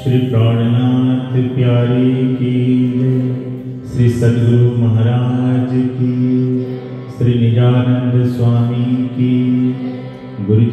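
A male voice chanting a devotional mantra in long held notes over harmonium accompaniment. It comes in three long phrases, with new ones starting about four and about seven seconds in.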